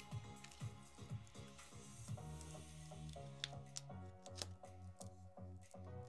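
Quiet background music with a steady, repeating beat and notes, with a few faint clicks a little past the middle.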